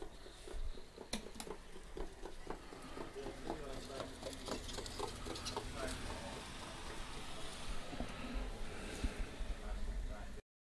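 Faint background sound of voices at a distance, with soft irregular ticks.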